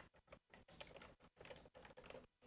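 Faint, rapid typing on a computer keyboard: a quick run of keystrokes, about seven a second.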